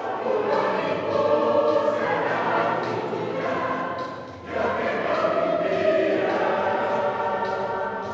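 Mixed choir of men's and women's voices singing held chords. One phrase ends about four seconds in and a new one begins, and the singing fades toward the end.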